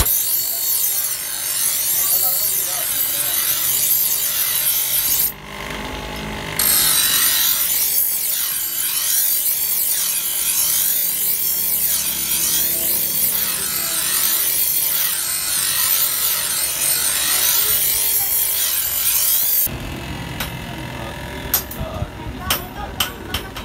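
Bench grinder's abrasive wheel grinding a steel knife blade: a loud, steady, high-pitched rasp, with a short break about five seconds in. Near the end the grinding stops, leaving a lower, quieter hum and a few sharp taps.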